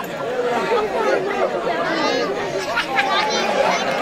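Several people talking over one another: indistinct, overlapping chatter of voices.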